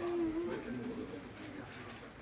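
Pigeon cooing: a low, wavering call in the first second, with murmuring voices behind it.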